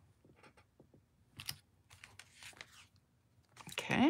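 Faint scattered clicks and taps of a clear acrylic stamp block and cardstock being handled on a craft mat as a rubber stamp is pressed onto paper and lifted off, with a few louder knocks and rustles near the end.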